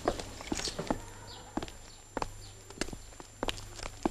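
A string of sharp, irregularly spaced taps or knocks, roughly two or three a second, over a steady low hum.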